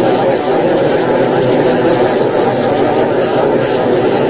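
Adobe Animate CC audio playback glitch: the animation's sound track comes out as a loud, continuous, muffled garbled drone with no clear words.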